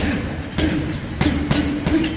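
Gloved punches landing on a hanging heavy bag: five sharp hits, the last three closer together.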